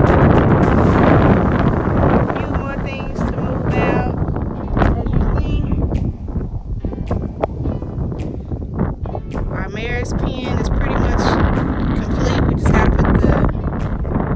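Wind buffeting the phone's microphone, a loud, rough rumble that rises and falls in gusts.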